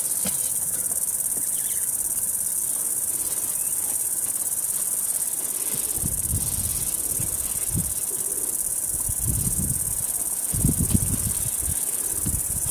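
A steady, high-pitched chorus of insects trilling. In the second half, irregular low rumbles and bumps come and go, loudest a little before the end.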